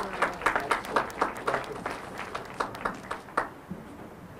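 Audience applauding with hand claps, the clapping thinning and dying away about three and a half seconds in.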